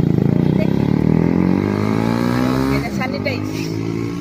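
A motor vehicle engine running close by, its pitch climbing over the first couple of seconds as it revs, holding, then easing off about three seconds in. Voices are faintly heard over it.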